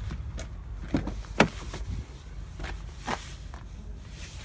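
Pickup truck door being opened: sharp latch clicks about a second in, the loudest just after, and another click near the end, over a low rumble.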